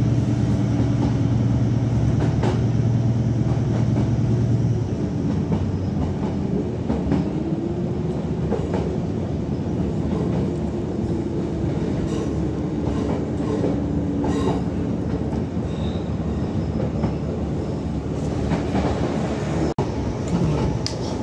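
Train running, heard from inside a carriage. A low steady drone drops away about five seconds in, a whine rises and then holds, and a few sharp clicks come over the continuous rumble.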